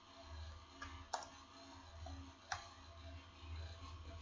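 Faint computer-keyboard keystrokes: a few sharp clicks, the loudest about a second in, over a low hum.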